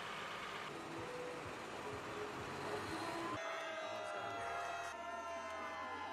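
Outdoor crowd noise: a steady noisy hubbub, then after a sudden change about three seconds in, many voices calling and cheering at once.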